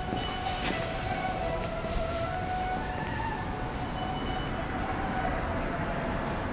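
Background music with slow, held melody notes over a steady wash.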